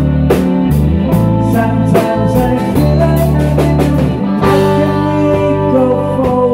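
Live rock band playing: electric guitars and electric bass over a drum kit keeping a steady beat.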